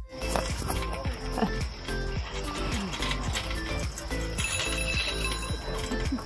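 Background music with a child's tricycle bell ringing over it, most clearly in the last second and a half.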